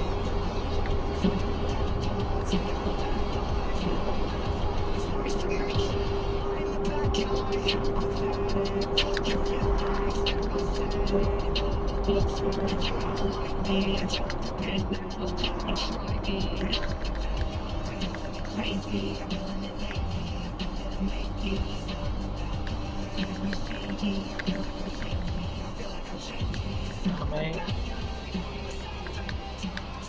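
Music with a steady bass beat, heard inside a moving car over road noise.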